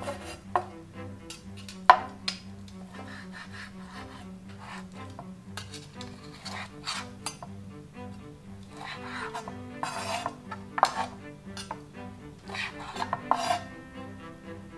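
A kitchen knife slicing through cooked steak and knocking on a wooden cutting board: short scraping cuts and a few sharp knocks, the loudest about two seconds in. Soft background music with held low notes plays throughout.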